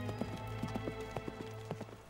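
Horses' hooves clip-clopping on hard ground, growing fainter as the horses move away, under background music of long held notes.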